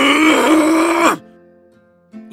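A loud, strained vocal groan from a voice actor, ending a little over a second in, over soft background music.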